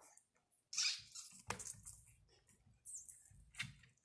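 A plastic zip-top bag of juice crinkling and rustling as it is handled and tilted, in a few short irregular bursts with a couple of sharp clicks.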